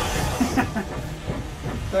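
Action-film trailer sound effects: a steady rushing hiss under a vehicle chase, with men laughing over it.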